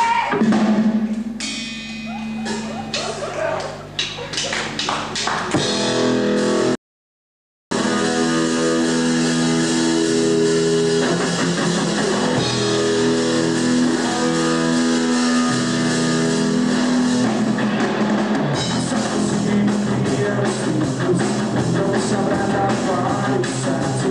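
Live rock trio of electric guitar, bass and drum kit starting a song: sparse guitar notes and drum hits at first, then the full band playing steadily. The sound cuts out completely for about a second, about seven seconds in.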